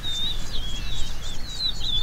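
Birds singing a continuous run of warbling, wavering chirps, over a low steady rumble.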